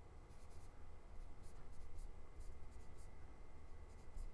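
Faint, brief scratches and taps of a stylus writing numbers on a tablet, one short stroke after another.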